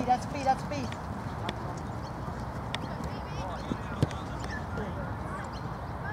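Ambience of a soccer match: distant voices of players calling near the start over a steady low background noise, with a few short sharp knocks of a football being kicked, the loudest about four seconds in.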